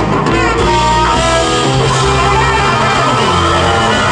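A live band playing: electric guitar and drum kit over long held sousaphone bass notes.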